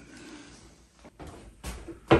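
Faint handling noises: a few light knocks and rustles of objects being picked up and moved, the loudest near the end.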